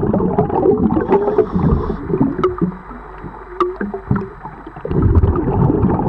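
Underwater noise of a scuba diver cleaning a fouled boat hull: gurgling regulator bubbles and scrubbing with scattered clicks. It is loud at first, quieter for about two seconds in the middle, then loud again near the end.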